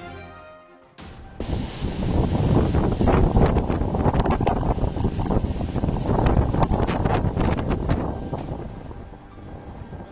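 Storm-force wind gusting across the microphone, a loud rushing noise with heavy low rumble and buffeting. It comes in suddenly about a second in, just after a short musical sting fades, and eases off near the end.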